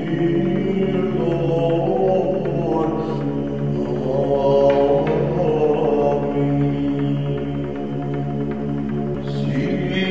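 Orthodox Byzantine chant: a male voice sings a slow melody over a steady held drone (ison).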